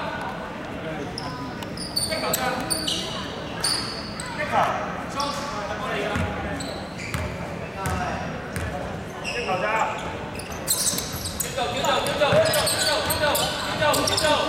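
Basketball bouncing on a hardwood gym floor, with several players' voices, echoing in a large sports hall.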